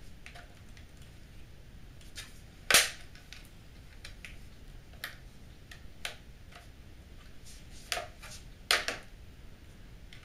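Plastic snap-fit clips on the top case of an Acer Revo RL80 mini PC popping free as a plastic guitar plectrum pries along the edge: sharp clicks every second or two, the loudest about three seconds in.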